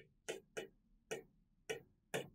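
Chalk tapping and scratching on a blackboard as terms of an equation are written: a few short, faint strokes about half a second apart.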